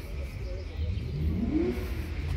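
A car engine revving once, its pitch rising and then falling about a second and a half in, over a steady low rumble.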